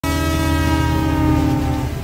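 Train horn sounding one long, steady blast over the low rumble of the running train, cutting off near the end.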